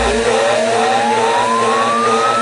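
House-music mix in a breakdown: the bass and kick drop out and a single synth tone sweeps steadily upward in pitch over sustained chords, a riser building tension.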